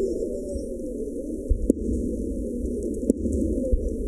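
Aerial firework shells bursting, with sharp bangs about a second and a half and three seconds in, over a low, muffled music bed whose middle frequencies have been filtered out.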